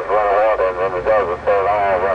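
A man talking over a two-way radio, heard through its speaker. A low steady hum comes in under the voice about half a second in.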